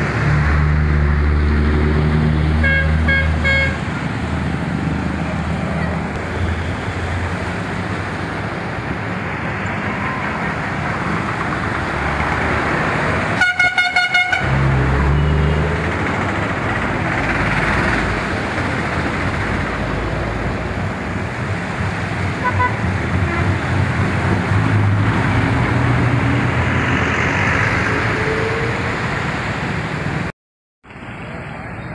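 Traffic wading through a flooded road: vehicle engines running and water splashing under the wheels. A horn honks briefly about three seconds in, and a louder horn sounds in several quick toots about halfway through.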